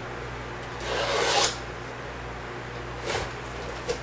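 Hand scraping along a cardboard box: a rasping scrape about a second in and a shorter one near three seconds.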